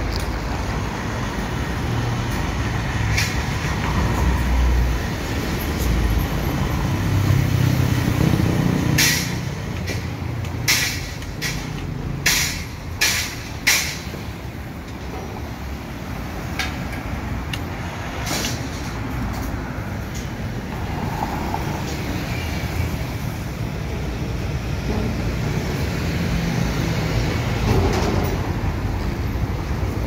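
Drum loader's 110-volt electric hoist (polipasto) running as it lifts a loaded 55-gallon drum up to a truck bed, a steady low rumble. A run of sharp knocks follows about nine to fourteen seconds in, with street traffic behind.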